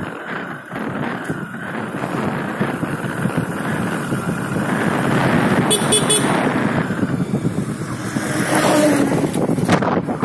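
A two-wheeler riding along a road, its engine running under steady wind rush on the microphone, with a short horn toot near the end.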